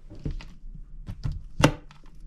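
A bag set down inside a storage compartment: a few short knocks and bumps, with one sharp knock about one and a half seconds in.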